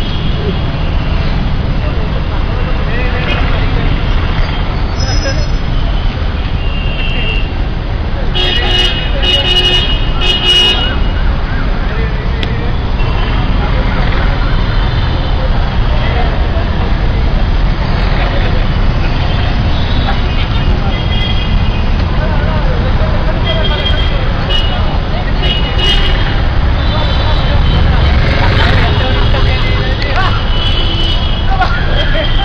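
Street traffic with a steady low rumble, vehicle horns tooting now and then, most around ten seconds in, and people talking.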